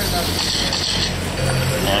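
Radio-controlled sprint cars running laps on a dirt oval, heard as a steady noise over a constant low hum, in the final seconds of the race.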